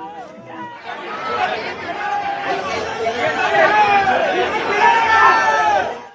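A crowd of many people talking and shouting at once, with no single voice standing out. It swells about a second in and cuts off abruptly at the end.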